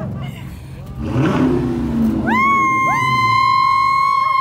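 Loud car engines revving. From about two seconds in, two high, steady shrieks start moments apart and are held to near the end.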